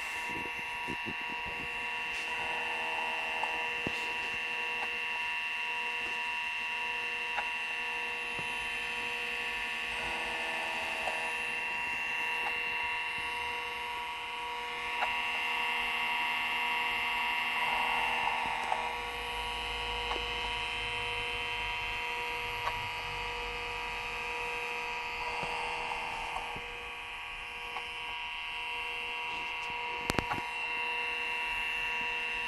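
Seagate ST-4038 MFM hard drive running in an open PC: a steady high whine over the computer's hum. A short burst of noise comes back about every seven to eight seconds, four times, with occasional faint clicks between.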